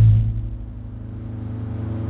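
A low note from an amplified electric string instrument, struck just before, rings on steadily, fading a little and then slowly swelling again.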